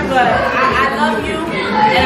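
Speech: a woman talking, with other voices chattering behind her.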